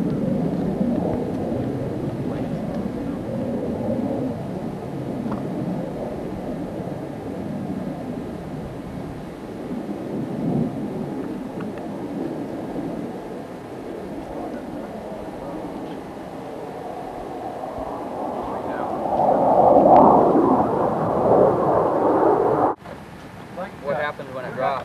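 Jet engine of a de Havilland Venom fighter, a low rumbling roar that eases off, then builds to its loudest about 20 seconds in. It is cut off abruptly near the end.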